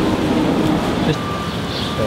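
Road traffic noise from the street: a vehicle running steadily, with a thin steady tone setting in about a second in.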